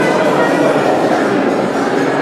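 Steady chatter of a crowd, many voices overlapping, in a large room.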